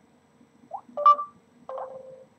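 Smartphone touchscreen keyboard giving short electronic tones as keys are tapped: three brief beeps in the second half.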